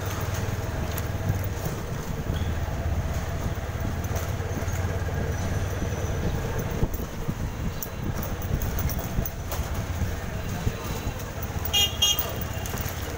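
Street ambience in a narrow lane of cycle rickshaws and motorcycles: background voices and passing traffic over a steady low rumble, with a short, high-pitched sound near the end.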